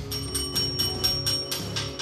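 A countertop service bell struck rapidly over and over, about five dings a second, its ringing carrying on between strikes, over background music. It is an impatient summons for servers to come pick up orders.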